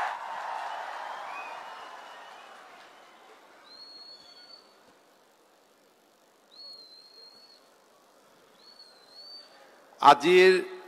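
Applause fading away over the first few seconds, then three short high whistled calls a couple of seconds apart, each rising into a held note, like a bird calling.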